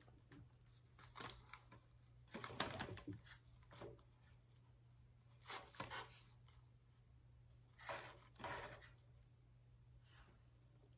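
Faint handling noises: a plastic-and-cardboard-packaged meat thermometer and other items being moved and set into a galvanized metal container, in a few short rustles and clicks, over a steady low hum.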